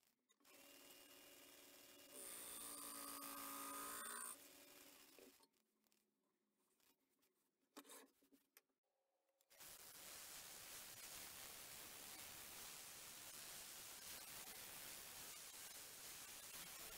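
Faint hum of a small wood lathe's motor, stepping up in level about two seconds in and dying away around five seconds. After a near-silent gap with one brief sound, a steady faint hiss of a rotary sanding pad on the spinning beech bowl sets in at about nine and a half seconds.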